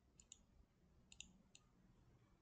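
Faint computer mouse clicks: two quick double clicks and one more single click, over otherwise near silence.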